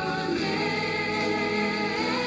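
Worship song: voices singing long held notes over instrumental accompaniment.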